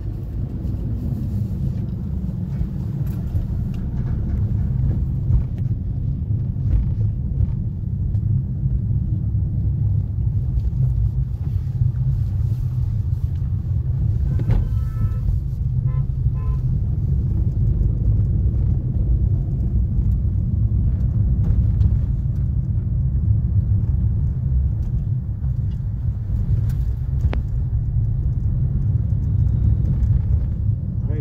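Steady low rumble of engine and road noise inside a moving car's cabin, with a brief pulsing tone about halfway through.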